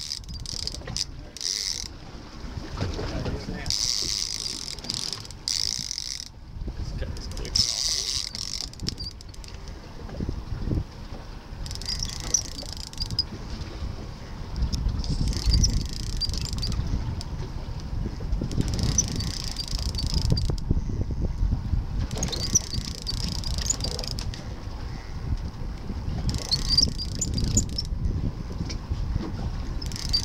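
Conventional fishing reel being cranked in repeated spells of a second or two, a high rattly whirr every few seconds, as the rod is pumped up and the line reeled down on a hooked fish. Wind and boat rumble run underneath.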